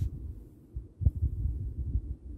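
Low, muffled thumps and rumble of a handheld phone being jostled and rubbed while it is carried, with a louder bump about a second in.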